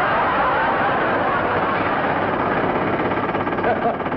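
Loud, continuous mechanical racket, a rapid clatter like a machine gun firing away, with studio audience laughter over it near the start.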